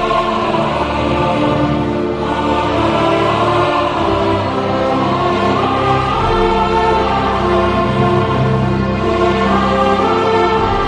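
Background choral music: a choir singing long held chords.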